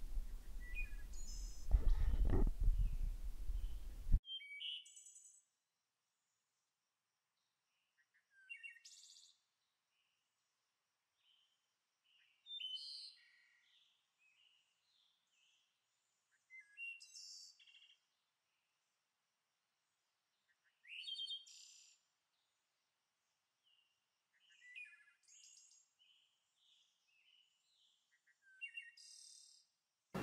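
Songbirds chirping in short, high phrases about every four seconds, with near silence between them. The first four seconds hold steady outdoor background noise, which cuts off suddenly.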